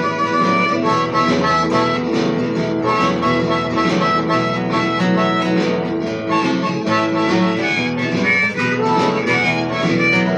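Steel-string acoustic guitar played solo in a blues instrumental break, plucked notes and chords running on with a steady rhythm.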